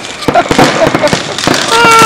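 Street fireworks going off: a rapid, irregular series of sharp cracks and pops.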